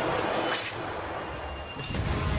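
Sound effects of an animated bending fight: a rushing whoosh about half a second in over a steady rumbling hiss.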